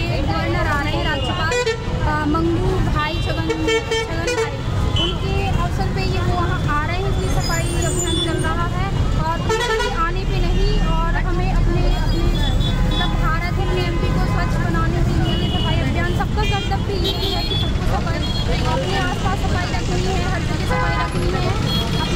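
People talking over steady road-traffic rumble, with vehicle horns honking now and then.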